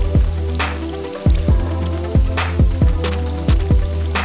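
Background music: an electronic beat with deep, falling kick drums over a steady low bass, and sharp snare hits every second or two.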